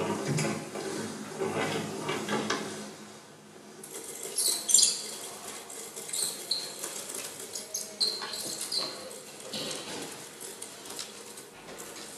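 Experimental sound-art textures: dense crackling, clicking and rustling noise with brief high squeaks, busiest from about four seconds in.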